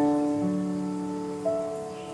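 Background music of soft held notes. A lower note joins about half a second in and a higher note about a second and a half in, while the sound slowly fades.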